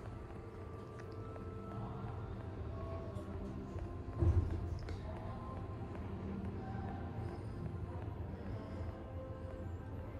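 Inground hydraulic passenger lift car descending, with a steady low hum through the ride and one knock about four seconds in. Faint music plays in the background.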